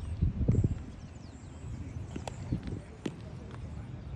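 Baseball infield practice: a few sharp knocks of baseballs being hit and fielded, over a low rumble that is loudest about half a second in, with faint voices.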